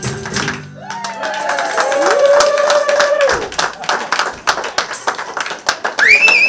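A choir song with tambourine and hand-clapping ends about half a second in. Applause follows, with long whooping cheers rising and holding over it, and a fresh whoop near the end.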